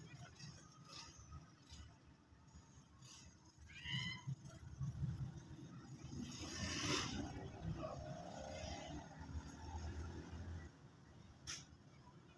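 Faint zebra finch calls at the nest: a few short chirps about four seconds in, then a scratchier run of calls around seven seconds, over a low steady hum.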